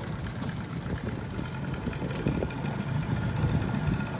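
A small boat's outboard motor idling steadily at low speed: a low, even drone as the boat creeps along.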